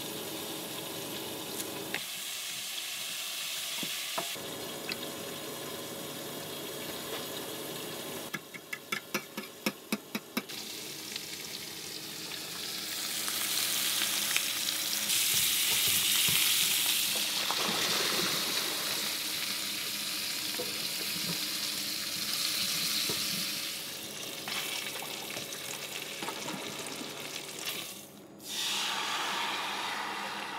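Sausage and potatoes sizzling as they fry in a stainless skillet, louder through the middle stretch. Early on, a fork beats eggs in an enamel bowl: a quick run of clinks lasting about two seconds.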